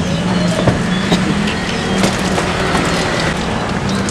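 A steady low engine hum within street traffic noise, with a few light knocks about one and two seconds in.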